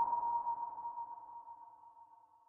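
Tail of an intro logo sting: a single high ringing tone left after the hit, fading slowly to almost nothing by the end.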